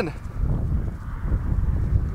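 Wind buffeting the microphone: an uneven low rumble that swells and dips, with a faint hiss above it.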